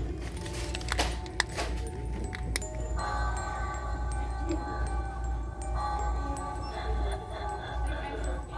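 Light-up Halloween cauldron decoration set off by its try-me button, playing a tune of several held, chime-like tones that starts about three seconds in, after a few handling clicks. Store background music plays underneath.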